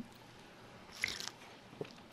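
Quiet room tone in a pause between spoken sentences, with one brief faint click and rustle about a second in and a tiny tick near the end.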